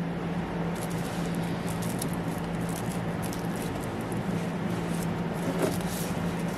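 Cardboard LP record jackets being flipped through, a string of soft rustles, brushes and light taps as the sleeves rub and knock against each other, over a steady low hum in the room.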